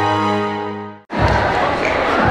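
Intro music, a held chord, fades out about a second in and cuts straight to a hall crowd cheering and shrieking.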